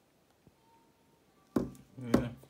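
Quiet room tone, then a single sharp knock near the end, the sound of something bumped or set down on a hard tabletop.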